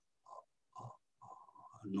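A man's faint, short wordless vocal sounds, three brief murmurs a fraction of a second apart, with louder speech starting at the very end.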